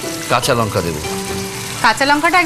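Chicken and bamboo shoot curry sizzling as it cooks in a kadai, a steady frying hiss, with a few short snatches of voice over it.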